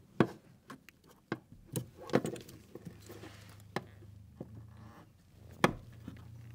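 Scattered sharp plastic clicks and knocks as a fuel line quick-connector is handled and pushed onto a car's fuel pump module, with the loudest taps just after the start and shortly before the end.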